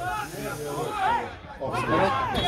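Several men's voices talking and shouting over one another, with a steady hiss underneath.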